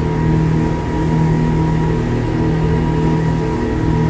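Engines of a fast tour boat running at a steady cruise, heard inside its enclosed passenger cabin as a loud, even, low drone.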